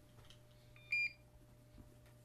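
One short, high electronic beep about a second in, over low room tone.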